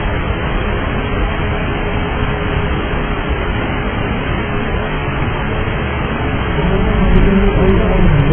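Steady, dull rushing noise of a DC-9's cabin in flight, recorded on an old cockpit voice recorder channel, with a faint steady hum running through it. Near the end a low, pitched sound rises over the noise and it grows a little louder.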